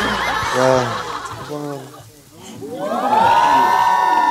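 A group of people laughing and talking over each other, then about three seconds in a long held, high note comes in as background music starts.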